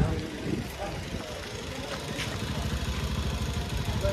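Street ambience: a vehicle engine running nearby as a steady low rumble, with voices briefly at the start and a faint tick about two seconds in.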